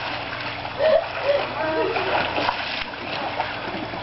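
Swimming-pool water splashing and churning steadily as a person swims through it, with a few short, faint voices.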